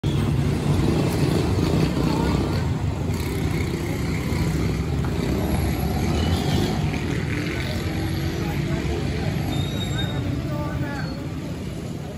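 Street traffic with a vehicle engine running close by in a steady low rumble, and people talking in the background; the sound begins to fade out near the end.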